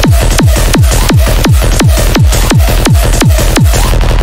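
Happy hardcore dance music: a hard kick drum that drops in pitch on every beat, at about 170 beats a minute, under bright, dense synths.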